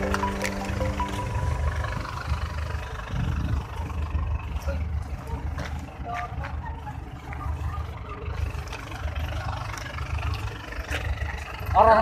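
Background music that ends about a second in, followed by a low, uneven rumble of outdoor noise with vehicles.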